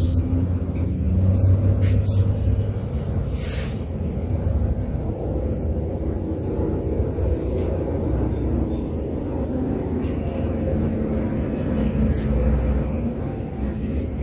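A steady low rumble, with a brief higher scrape about three and a half seconds in.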